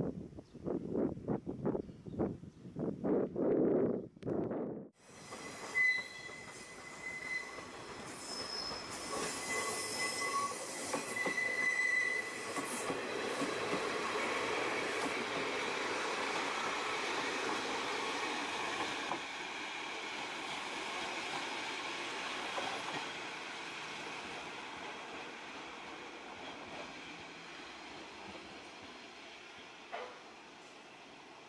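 A diesel railcar pulling away from a station platform. High wheel squeals come and go in its first seconds of movement, then its running noise swells and slowly fades as it draws away down the line.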